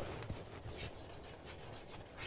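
Chalk writing on a chalkboard: a faint run of short, scratchy strokes as a word is written out in cursive.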